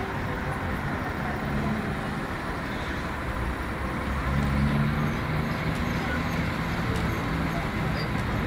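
A heavy truck engine running steadily, working a truck-mounted crane that holds a helicopter over a lowboy trailer. It gets a little louder about halfway through.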